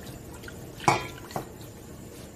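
Wooden chopsticks stirring pieces of beef brisket in cold water in a wok, with small splashes and drips. There is a sharp clink of the chopsticks against the wok about a second in and a lighter one half a second later.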